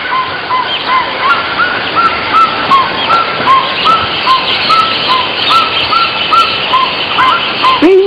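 Tropical forest ambience: a steady background hiss with a rapid run of short, arched chirping calls, about two or three a second, alternating between two pitches.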